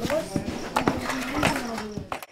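Small hand hammers knocking irregularly on wooden moulds of wet concrete being tamped into tiles, a few sharp taps a second, with children's voices alongside.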